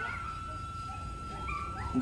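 A long, thin, high-pitched whine that holds almost one steady pitch throughout.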